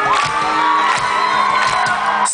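Live rock band playing through a festival PA, heard from within the audience, with the crowd cheering and a high voice holding one long note over the music.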